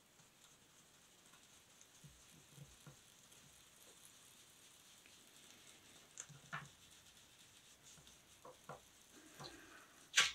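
Near silence with a few faint, soft, irregular dabs of a foam ink-blending dauber pressed onto paper.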